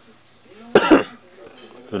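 A person coughing once, a short sharp burst about three-quarters of a second in.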